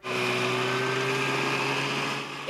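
A group of snowmobiles riding along a trail at steady low speed, their engines running with an even drone; the sound starts abruptly.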